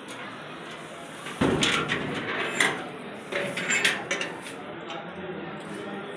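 Indistinct voices in a room, with a sudden louder burst about a second and a half in and several sharp clicks and knocks.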